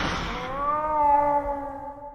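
A cat's meow, slowed down and heavy with reverb, closing the song: one long call that rises a little, holds and fades away.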